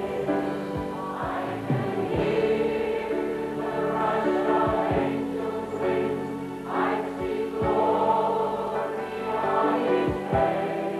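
A large church congregation singing a hymn together in a big hall, accompanied on an electronic keyboard, with low notes falling about once a second.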